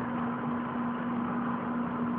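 Steady background hum and hiss with a constant low tone.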